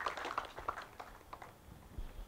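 Light applause from a small audience: scattered hand claps that thin out and die away about a second and a half in.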